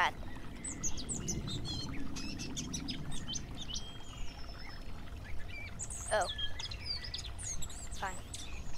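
Wild birds chirping and calling, with many short high chirps and whistles one after another, over a low outdoor background rumble.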